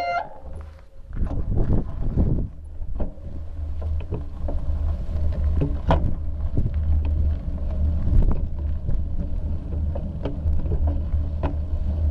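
Wind rumbling on the microphone of a bicycle-mounted camera while riding, with frequent small knocks and rattles from the bike on rough, patched pavement.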